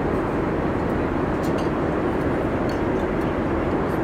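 Steady cabin noise of a Boeing 747-8 airliner in flight: an even, low rush of air and engine drone. A few faint light clicks sound over it.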